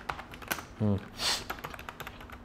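Typing on an HP K500Y gaming keyboard with round, typewriter-style keycaps: a quick, uneven patter of key clicks, with a short hiss about a second and a quarter in.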